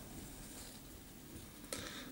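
Quiet room tone with faint handling noise and one small click near the end.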